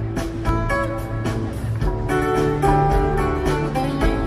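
Live acoustic band playing an instrumental passage: acoustic guitars strummed and picking single-note lines over an upright bass.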